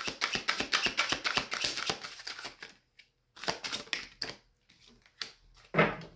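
Tarot cards being shuffled by hand: a fast, even run of card flicks for about two and a half seconds, then a short pause and a few scattered card sounds.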